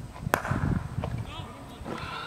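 A cricket bat striking the ball once with a sharp crack about a third of a second in.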